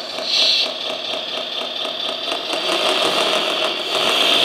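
JDM RC articulated dump truck running on the bench, its drive motor and gearbox whining steadily as the wheels turn in low gear with the differential locked, mixed with the engine sound from its sound module. The whine flares briefly about half a second in.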